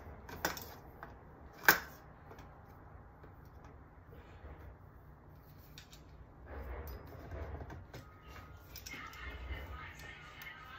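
Handling noise from assembling a bassinet frame: two sharp clicks early on, the second the louder, then soft rustling and bumping of parts.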